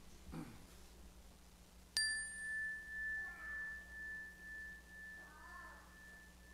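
A small meditation bell struck once about two seconds in, its clear high tone ringing on and slowly fading with a wavering pulse. It marks the start of a guided meditation.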